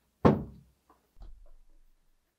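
The hinged acrylic lid of an xTool M1 Ultra laser engraver shutting with one sharp knock about a quarter second in, followed by a few softer, lower knocks.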